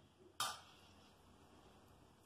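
A metal spoon knocks once against a bowl as it is set down, a single sharp clink a little way in, then quiet room noise.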